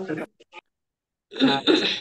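Speech over a video call: a voice trails off, cuts to dead silence for about a second, then another voice comes in near the end.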